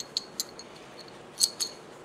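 Light metallic clicks of a Remington 870 shotgun's steel breech bolt parts being handled: two near the start and two more about a second and a half in, each with a faint ring.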